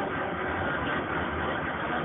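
Steady rumble and rolling noise of a commuter train in motion, heard from inside the passenger car.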